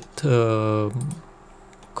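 A man's drawn-out hesitation sound, "uhh", held for under a second and falling slightly in pitch, then a few faint computer mouse clicks.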